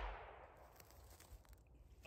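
The echo of a .22 rifle shot dies away in the first half second, leaving near silence with one faint tick about a second in.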